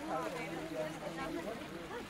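Several people's voices talking at once, indistinct, with no single clear speaker.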